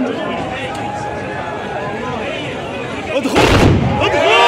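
Spectators chattering, then about three seconds in a single loud blast from the volley of tbourida horsemen firing their black-powder muskets together at the end of their charge, lasting about half a second.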